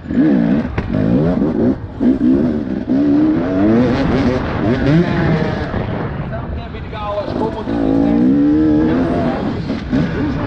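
Enduro motorcycle engine heard from on board under race throttle, its revs climbing and dropping again and again as the rider accelerates and shifts through the mud, with a few sharp knocks in the first few seconds.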